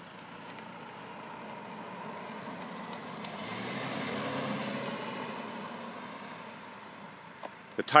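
BMW 745Li sedan with its 4.4-litre V8 driving slowly past at close range: engine and tyre noise build, peak about halfway through as it passes, then fade as it drives away.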